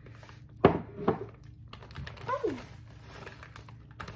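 Two sharp knocks of a scoop against a mug as brown sugar goes in, about half a second apart, the first the louder. Then a cat meows once, a short cry falling in pitch.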